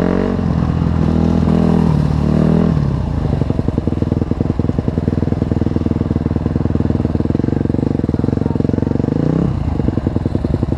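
Dirt bike engine heard from on board. It revs up and down for the first few seconds, then runs at low revs with its separate firing pulses audible, and revs up again near the end.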